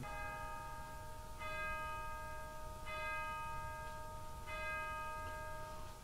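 A bell struck four times, about a second and a half apart, each stroke ringing on with several clear, steady tones.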